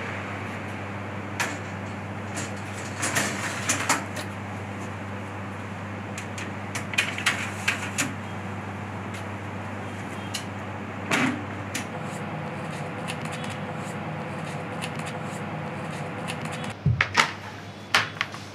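Sheet-metal baking trays of cookie dough being slid onto the racks of a convection oven and the oven door shut: a string of metal clatters and knocks over a steady low hum.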